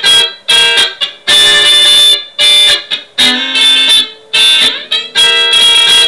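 Electric guitar playing a funk groove in D: short, choppy chord stabs with brief gaps between them, one chord held for about a second early in the phrase.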